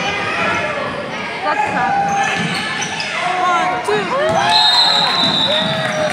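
Basketball being dribbled on a gym's hardwood court, with sneakers squeaking and players and spectators calling out in a large echoing hall. A steady high whistle, a referee's, sounds for about a second near the end.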